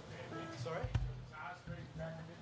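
A single short, low thump from the drum kit, a kick drum hit, about a second in. Around it are a spoken word and faint low instrument tones from the band's amplifiers.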